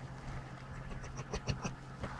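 Standard poodle in labour licking herself: a quick run of about six short wet licks about a second in, over a steady low hum.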